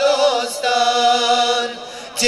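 Male choir singing unaccompanied, a Bosnian hymn for Bajram: a brief sliding phrase, then one long held note that fades near the end.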